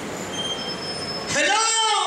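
A drawn-out, high-pitched vocal cry through a microphone and PA, starting about a second and a quarter in and rising, then falling in pitch. Before it there is only faint room noise.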